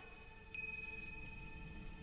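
Carriage clock striking the hour: a high bell-like chime about half a second in and a second one at the end, each ringing on and fading slowly.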